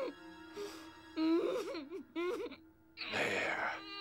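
A woman moaning and whimpering through a mouth that is sewn shut, her voice wavering up and down in pitch. About three seconds in comes a harsh, noisy breath. A steady low music drone is held underneath.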